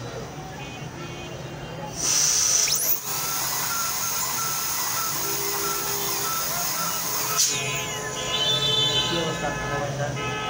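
High-speed dental air-turbine handpiece (dental drill) cutting on the decayed upper front teeth. It starts with a sudden high whine and hiss about two seconds in, runs steadily for about five seconds, then stops with a falling whine.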